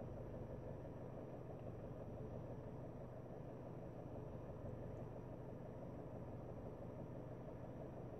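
Faint, steady low hum inside a car's cabin, with no distinct events.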